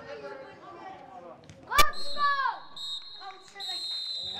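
Young footballers shouting on the pitch, a sharp thump a little under two seconds in, then a referee's whistle sounding, held as a long steady blast near the end to stop play.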